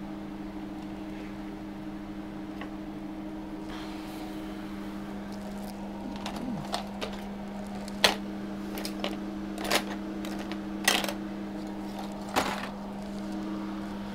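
Small objects on a workbench being moved and knocked about while someone searches for a tool: a scattering of sharp clicks and clunks, mostly in the second half, over a steady electrical hum.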